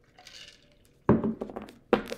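A sip through a straw from a plastic tumbler, then a sudden thunk about a second in and a sharp knock near the end.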